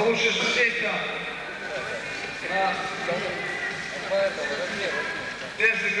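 A man's voice announcing over a microphone and loudspeakers in short phrases with pauses between them; the words are indistinct.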